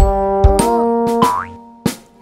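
Cartoon boing sound effect as a thrown die bounces, over a bright children's song backing. It opens with a sharp hit, and the music fades out near the end.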